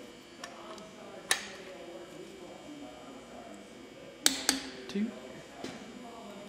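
Click-type torque wrench releasing at its 75 ft-lb setting on the cylinder head bolts of an IH C-153 engine: one sharp click about a second in, then two quick clicks a little past four seconds. A man's voice counts a bolt near the end.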